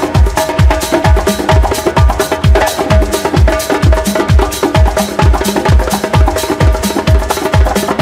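House music with a kick drum on every beat, about two a second, a steady held tone, and fast live hand-drum strokes over the top.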